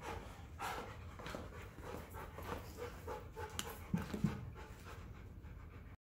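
A dog panting in quick, even breaths. Two short knocks sound about four seconds in.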